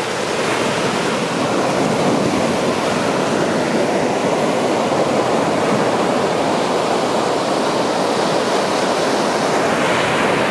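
Ocean surf breaking and washing up a sandy beach: a steady, even rush of waves.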